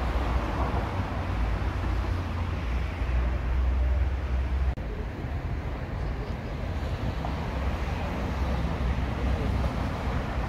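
Steady road traffic noise from a busy city street, with a deep low rumble; it drops out for an instant a little before halfway.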